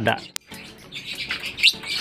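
Lovebirds in a cage giving short, high chirps, a few of them near the end. A sharp click sounds about a third of a second in.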